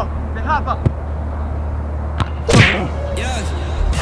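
A football being kicked: a couple of light sharp touches, then a louder strike about two and a half seconds in, with brief voices in between.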